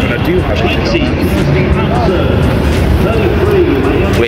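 Several people talking at once, their words indistinct, under a heavy steady rumble of wind on the phone's microphone.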